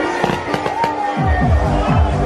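Fireworks bursting with sharp pops over loud electronic dance music; the music's deep kick drum drops out and comes back in about a second in.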